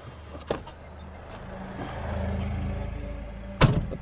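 A motor vehicle's engine hum on the road, swelling to its loudest about two seconds in and easing off again, as a vehicle passes. A sharp knock sounds near the end.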